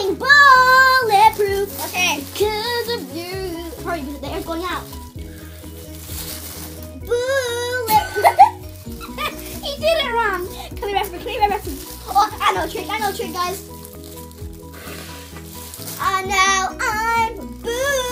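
Children's high-pitched, helium-altered voices squealing and laughing over background music with a steady bass line.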